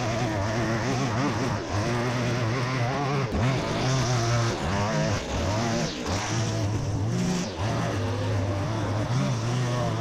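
Two-stroke petrol line trimmer (whipper snipper) engine running, its speed rising and falling as it is throttled, with a brief hiss of higher sound about four seconds in and again near seven seconds.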